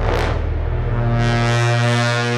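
Dramatic background-score sting: a short whoosh, then a sustained low, horn-like drone that holds steady.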